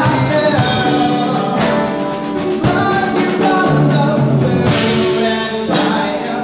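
Live rock band performing: guitars, bass and drum kit, with cymbal hits over sustained guitar notes.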